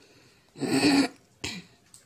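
A woman coughing: one strong cough about half a second in, followed by a shorter, weaker one about a second and a half in.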